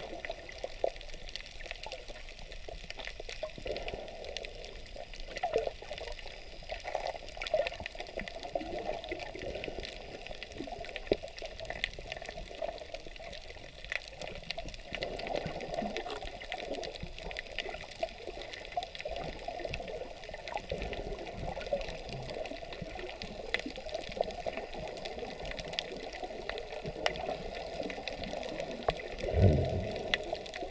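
Underwater sound picked up through a waterproof action camera's housing: a steady muffled wash of water with many small scattered clicks and crackles, and a louder low swell near the end.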